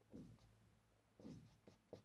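Faint marker pen writing on a whiteboard: one short stroke at the start, then a few more short strokes from about a second in.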